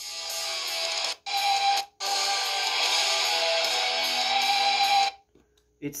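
Electric guitar playing the opening notes of a solo: a quick sweep in two short phrases, then a long held note from about two seconds in, stopping about five seconds in. The guitar is a little out of tune.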